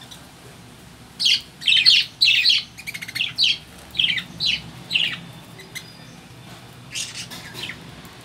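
Caged budgerigars calling: a rapid run of about a dozen short, harsh, high calls over a few seconds, then a few fainter calls near the end.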